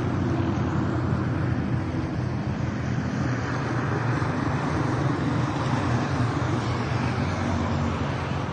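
Steady low rumble of vehicle engines and road traffic, a continuous hum with no distinct events.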